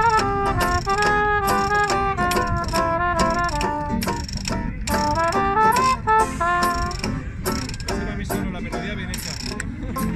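Acoustic hot jazz band playing: a trumpet and violin melody over strummed ukulele and guitars, with a washboard scraped in a steady rhythm. The melody drops out about seven seconds in as the tune winds down, leaving the strummed rhythm.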